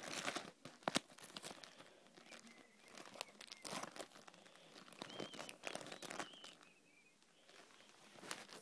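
Quiet rustling and crinkling of trading cards and plastic packaging being rummaged through by hand, with scattered sharp clicks and light knocks.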